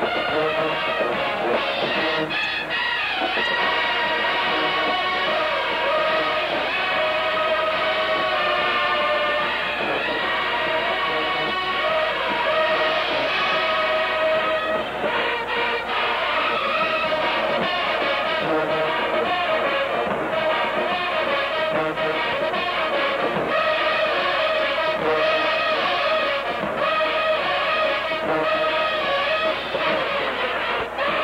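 Show-style marching band playing from the stands, a massed brass section holding loud, steady chords.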